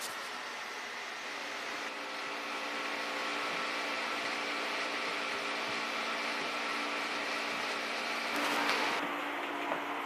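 Droning electronic noise soundtrack: a dense hiss with several steady humming tones held underneath, slowly growing louder. There is a brief brighter swell near the end, and then the hiss suddenly turns duller.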